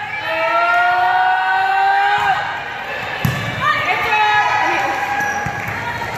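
Volleyball rally in a gym: players' drawn-out shouts and calls, with a sharp ball hit about three seconds in.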